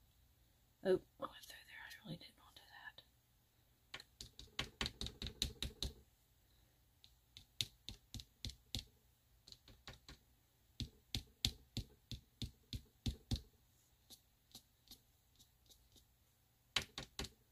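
Edge of a small inked card tapped repeatedly onto glossy photo paper, stamping short lines of ink: a quick run of clicks about five a second, then a slower, steady series of taps, thinning out near the end.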